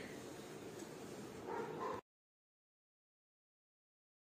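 Faint room noise for about two seconds, then the sound cuts out to complete silence.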